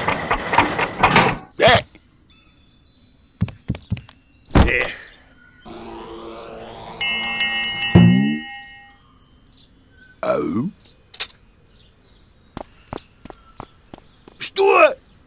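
A string of cartoon sound effects with light music: a rattling rush in the first second, a few sharp knocks, a rising sweep with high chiming tones that ends in a heavy thud about eight seconds in, and short wordless vocal sounds, one rising and one falling.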